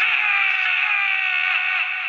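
A man's long, drawn-out shout into a handheld radio: one held call that sounds thin, with no low end, and trails off slightly near the end.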